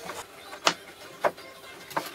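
Four separate sharp wooden knocks, about one every half second, as the wooden frame strips of a serving tray are handled and pushed into place around its hardboard base on a workbench.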